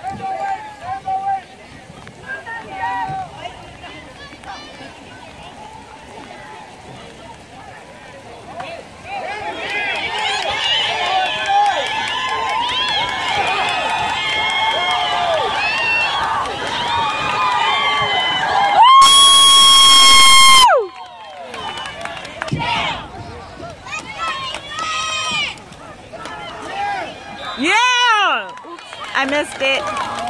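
Spectators and players on the sideline shouting and cheering, swelling into a loud crowd of yelling voices as a ball carrier breaks a long run. Then comes one loud, steady, high-pitched blast lasting under two seconds, followed by scattered shouts.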